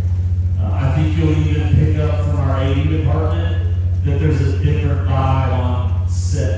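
A man's voice amplified through a handheld microphone and PA, in drawn-out pitched phrases, with a steady low hum underneath.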